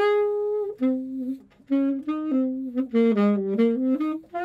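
Unaccompanied alto saxophone starting a jazz tune: it comes in suddenly on a held note, then plays a phrase of shorter notes with a brief breath between them.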